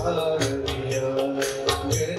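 Live Indian devotional bhajan music: harmonium and keyboard holding sustained notes over a steady beat of tabla strokes, about three a second.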